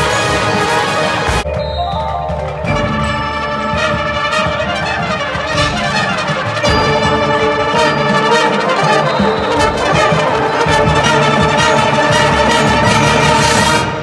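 Marching band brass section playing a full ensemble passage, with brass chords held over percussion. The sound thins briefly about one and a half seconds in and grows louder about seven seconds in.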